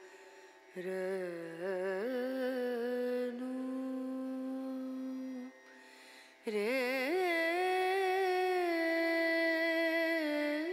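Background vocal music: a single wordless voice humming long held notes, with wavering ornamented turns between them. It breaks off briefly near the start and again about six seconds in, then comes back louder.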